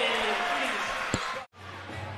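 Indoor basketball game sound: crowd and court voices with a single sharp thud a little over a second in. The audio then drops out abruptly for a moment at an edit, and the court ambience comes back.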